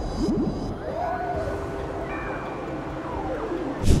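Underwater sound picked up by sonar or a hydrophone: slow pitched calls that glide up and down over a steady low rumble.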